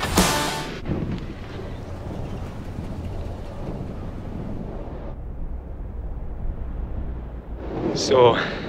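Background music cuts off about a second in, leaving a low, steady rumble with a faint hiss. The hiss fades a little past the middle.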